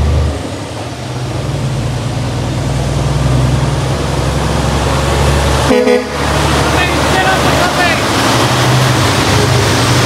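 Kenworth B-double truck's diesel engine pulling past under load, its low drone building as it approaches, with tyres crunching on gravel. A short horn toot about six seconds in.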